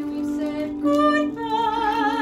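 A woman singing a solo show-tune ballad from a score, over a steady held accompaniment tone. Near the end she holds a high note with vibrato.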